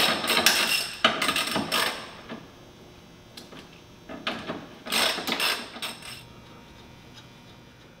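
Hand ratchet wrench clicking in short runs, with quiet gaps between, as bolts on the transmission are loosened for its removal.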